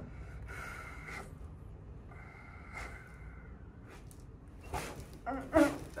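A person breathing out slowly through the nose or mouth, two long soft exhalations with a faint whistle in them, then a short breath and a brief voiced 'uh' near the end.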